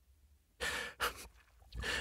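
A man's breathing between spoken lines: a soft breath out, a shorter one, then a breath in just before speech resumes.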